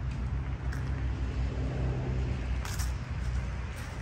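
Steady low drone of highway traffic, with one short tick about two and a half seconds in.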